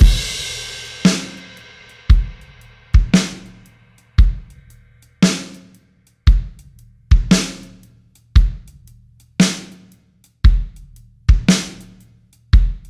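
Drum-bus playback of a drum kit beat through Baby Audio's TAIP tape-saturation plugin with its presence control turned up. It opens on a cymbal crash that rings for a few seconds, then strong kick and snare hits land about once a second with hi-hat ticks between them.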